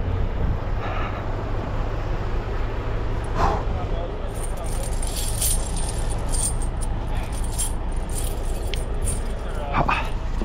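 Steel truck tire chains jingling and clinking as they are handled and laid out on snow, over the steady low hum of the truck's idling diesel engine.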